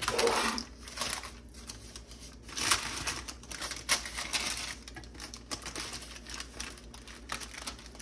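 Parchment paper crinkling and rustling as the paper lining of a cake pan is handled, in irregular bursts with small clicks, louder at the start and again near three seconds in.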